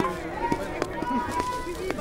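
Low market background: faint distant voices with a few soft knocks, and a faint steady tone through the second half.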